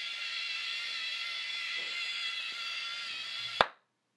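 LEGO Mindstorms EV3 motors driving the tracks with a steady, high-pitched gear whine as the robot rotates in place. The whine cuts off suddenly with a sharp click about three and a half seconds in as the motors stop.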